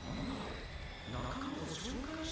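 Faint dialogue from the anime playing underneath: a character speaking in Japanese, with short gaps between phrases.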